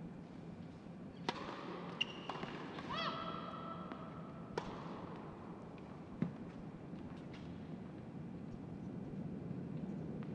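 Tennis ball struck by rackets in a short point: a sharp serve hit a little over a second in, further hits around two and four and a half seconds, and a duller thud about six seconds in. Short squeaks and one drawn-out high squeal near three seconds come between the hits, over a steady low hum.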